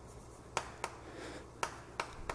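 Chalk writing on a chalkboard: a few sharp, faint taps of chalk striking the board with light scratching between them.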